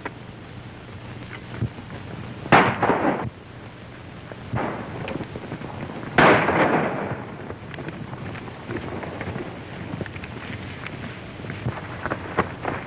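Two gunshots about three and a half seconds apart, each with a short echoing tail, fired by riders on horseback; faint knocks of galloping hooves come in between and after.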